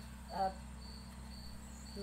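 Insect chirping, a short high note repeated evenly three times, over a low steady hum.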